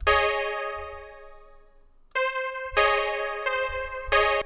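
Synth chords from FL Studio's Morphine plugin: one chord struck at the start and left to die away over about two seconds, then three more chords struck in quick succession in the second half.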